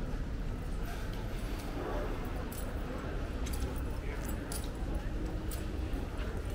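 Pedestrian-street ambience: footsteps on stone paving, passers-by talking and a low rumble of traffic.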